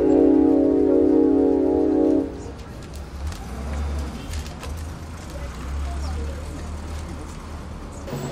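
Background film score: a held synthesizer chord sounds loud for about two seconds and then stops abruptly. A quieter low rumble follows.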